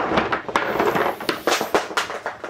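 A load of Funko Soda collectible cans, metal cans with vinyl figures inside, tumbling off a shelf and clattering onto the floor: a dense run of knocks and rattles.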